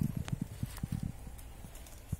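A quick run of soft, low knocks and taps, dying away after about a second and a half.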